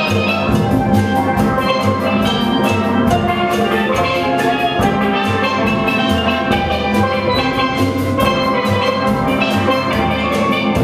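A steel band playing a tune: steel pans struck in quick runs over deep bass pan notes, with a drum kit keeping a steady, even beat.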